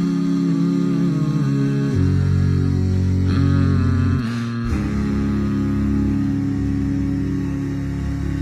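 A cappella vocal harmony: several voices hold sustained chords over a deep bass voice, and the chord changes about two seconds in and again just before five seconds.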